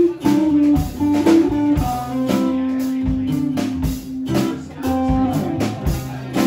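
Live band playing an instrumental passage on two acoustic guitars with a drum kit, with no singing. A long note is held for nearly two seconds near the middle.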